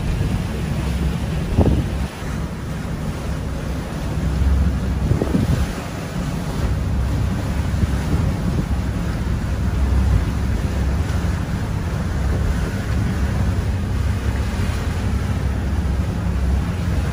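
Wind noise and a steady low rumble aboard a sailboat motor-sailing with the main up through rough, mixed-up seas, with waves washing past the hull. A couple of brief louder surges come about one and a half and five seconds in.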